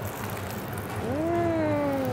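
A person hums one long "mmm" of enjoyment while tasting food, starting about a second in, over steady background noise.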